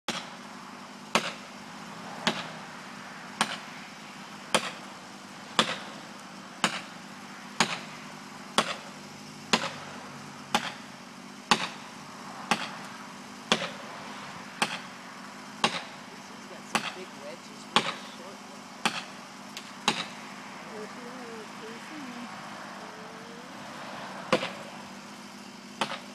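Sharp, evenly spaced blows struck into a tree trunk during felling, about one a second. They stop about 20 seconds in, then two more come near the end.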